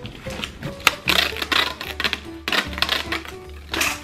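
Clear packing tape pulled off its roll in two long pulls, about a second each, and pressed onto a cardboard box, over background music.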